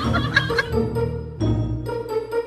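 Background music with steady held notes.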